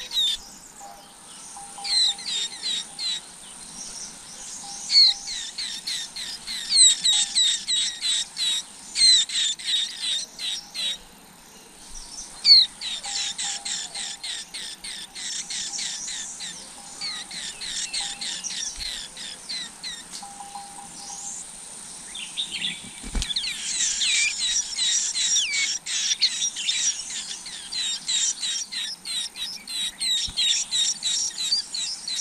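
Small songbird nestlings begging in the nest, a rapid run of high, thin chirps in bouts while an adult feeds them, with a short lull in the middle. There is one brief low thump about two-thirds of the way through.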